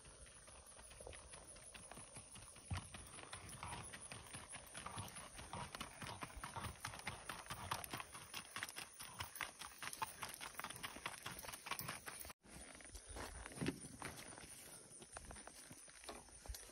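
Hoofbeats of a molly mule walking on gravel: an irregular, continuous run of footfalls crunching on the stones.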